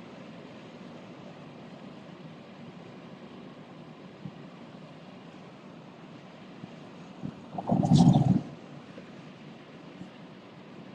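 Steady hum and hiss of a vehicle cabin. A brief louder sound, the loudest thing here, comes about eight seconds in.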